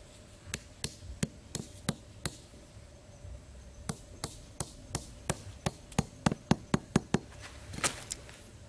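A small hand tool knocking a bamboo stake into hard sandy ground: about six evenly spaced blows, a pause of about a second and a half, then about a dozen quicker, louder blows, with one last knock near the end.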